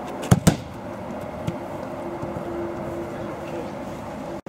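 A football struck hard in a shot-speed test: two sharp thuds a fraction of a second apart, the boot hitting the ball and then the ball hitting the inflatable goal.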